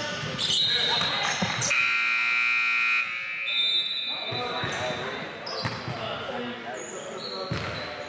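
Gym scoreboard buzzer sounding once for over a second, a steady electric tone, as play stops. Around it come a basketball bouncing on the hardwood, shoe noises and players' voices echoing in the large gym.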